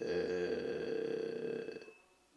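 A man's drawn-out vocal sound at one steady pitch, like a long hesitation "ehhh", held for nearly two seconds and then fading.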